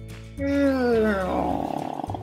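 A person's voice making a long, falling "mmm" that turns rough and gravelly toward the end, over background music.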